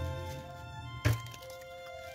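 A small handheld stapler clacks shut once, about a second in, stapling the layers of a paper snowflake together at its centre, over background music. Low handling noise of paper on the table comes before it.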